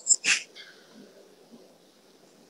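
A single short breathy puff close to the microphone, like a breath or sniff, followed by faint room murmur.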